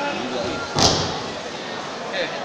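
A single sharp thud a little before halfway through, over the murmur of voices in a large hall.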